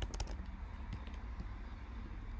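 Keys typed on a computer keyboard as a name is entered: a quick run of keystrokes right at the start, then a few single clicks about a second in, over a steady low hum.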